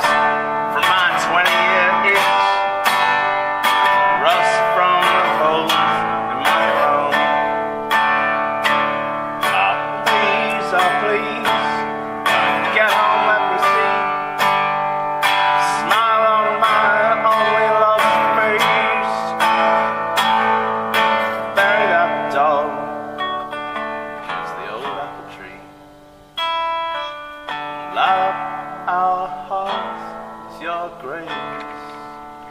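Acoustic guitar strummed in a steady rhythm, with a man's voice singing over it. Near the end the strumming dies down briefly, then comes back as a few single plucked notes.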